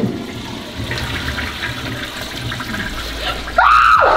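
A ceramic toilet flushing, with water rushing steadily into the bowl around a hand held in it. Near the end a sudden loud shout cuts in.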